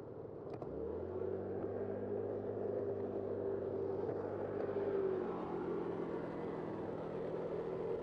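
A motor vehicle's engine pulling away from a green light. Its pitch rises just under a second in, holds steady, then drops lower a little after five seconds in, over steady traffic and road noise.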